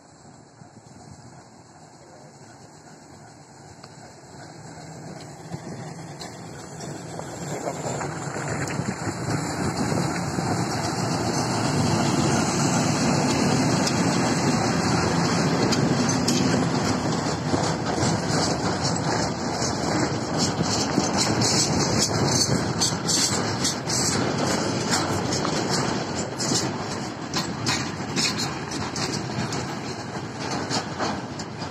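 ChME3 diesel shunting locomotive running as it approaches and passes, its engine growing louder over the first dozen seconds. Then the freight train's tank cars and open wagons roll past, their wheels clicking rapidly and unevenly over the rails.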